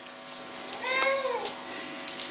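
A single short, high-pitched cry about a second in, its pitch rising and then falling, over a faint steady hum.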